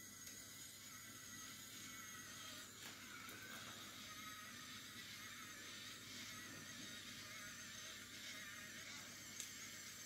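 SwitchBot Curtain robot's motor running steadily as it drives along the rod, pulling the curtain open: a faint, even whir with a high whine in it.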